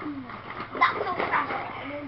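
A child's short, pitched vocal noises with no clear words, plus a few light knocks.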